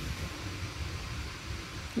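Room tone: a steady low hum with a faint hiss, with no distinct event in it.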